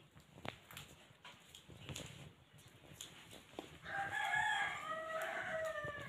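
A rooster crowing once, a drawn-out call of about two seconds that starts about four seconds in and drops in pitch at the end. A few faint clicks and knocks come before it.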